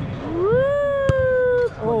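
A person's long drawn-out shout that rises in pitch, holds for about a second and then cuts off. Partway through comes one sharp thud of a soccer ball being struck in a penalty kick. Speech starts right after, near the end.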